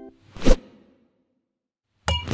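A single whoosh sound effect, a short rushing swell that builds to a peak about half a second in and dies away quickly, used as a transition between animated title cards.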